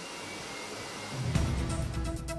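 Hair dryer running with a steady hiss, then a little over a second in a music transition with deep bass cuts in.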